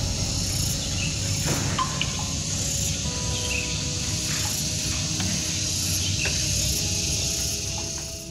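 Ambient noise of a building lobby: a steady high hiss over a low rumble, with a few brief faint chirps.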